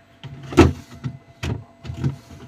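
Plastic produce baskets sliding and knocking on a refrigerator shelf, a few separate clunks, the loudest about half a second in.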